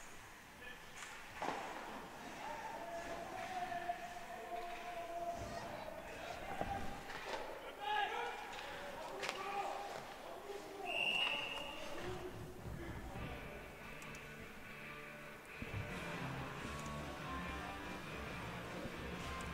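Ice hockey play echoing in a rink: stick and puck knocks and voices calling, then a short referee's whistle about 11 seconds in that stops play. After the whistle, music with a steady beat starts up.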